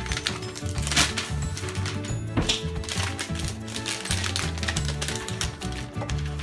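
Background music with a changing bass line, over sharp crackling and rustling of gift wrapping paper being handled, loudest about a second in.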